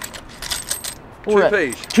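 Coins clinking and jingling against each other and the metal of a muddy, water-filled cash box as a gloved hand scoops them out, a quick cluster of clinks in the first second. A man's voice calls out loudly after that.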